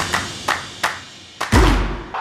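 Percussive trailer-style hits: three sharp impacts about a third of a second apart, then a pause and a loud, deep boom about one and a half seconds in.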